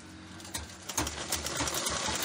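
Domestic sewing machine starting up about half a second in and stitching, its needle and feed running in a fast, uneven clatter of clicks as a sleeve seam is sewn.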